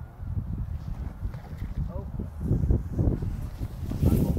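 Wind and handling noise on a phone microphone: irregular low rumbling and knocks, heavier in the second half, with faint muffled voices.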